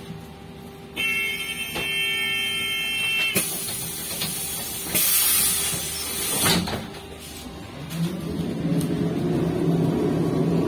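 Inside a Škoda 15Tr03/6 trolleybus at a stop: a steady electronic warning tone sounds for about two seconds. Then the pneumatic doors work with a loud hiss of air and a knock as they come to rest. About eight seconds in, a low hum from the trolleybus's drive rises in level.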